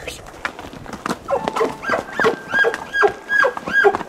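Elk bugle call blown through a grunt tube by a rider on horseback. Starting about a second in, a held high whistle runs under a quick series of rising-and-falling chuckles.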